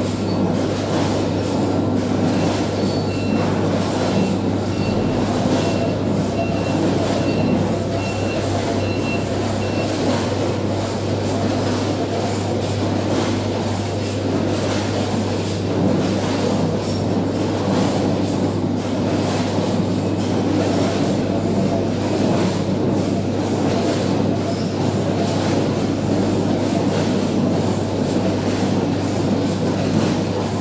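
Brussels sprout packing line running steadily: conveyor belts and bagging machinery with a constant low hum. A run of short high beeps, about two a second, sounds from a few seconds in to about a third of the way through.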